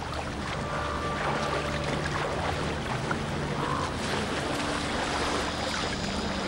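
Icy water sloshing and churning steadily as bison thrash in a half-frozen pool after breaking through the ice.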